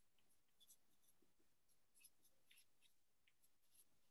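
Faint squeaks and scratches of a felt-tip marker writing on flip-chart paper, a string of short irregular strokes.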